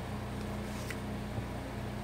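Steady low hum of background machinery in the room, with a single faint paper click a little under a second in as a journaling card is handled.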